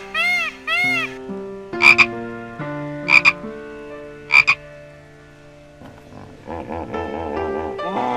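A frog croaking: three loud, short croaks a little over a second apart, over soft background music. Shorter repeated animal calls sit in the first second and near the end.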